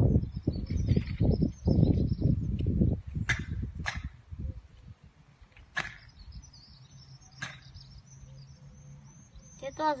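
Wind rumbling on the microphone for about the first three seconds. Then four short, sharp swishes of clothing from fast karate kata techniques done at full force, the last about seven and a half seconds in.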